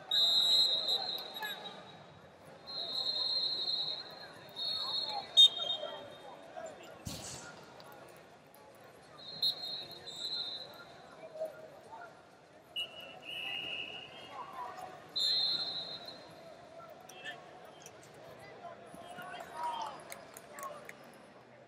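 Referees' whistles blowing several times across a busy wrestling hall, each blast about a second long and high-pitched, over a murmur of voices. A couple of sharp smacks cut through, the loudest about five seconds in.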